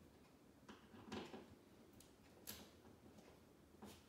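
Faint, irregular scratchy clicks of a hand screwdriver driving a screw into a plastic drywall anchor, a few separate turns, the loudest a little over a second in.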